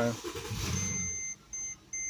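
2012 Mercedes-Benz GL450's V8 cranking and catching on a key turn in the repaired electronic ignition switch, a brief start-up rush that settles within about a second and a half. The start is the sign that the re-soldered switch connector now makes good contact. Partway in, a dashboard warning chime begins beeping about three times a second.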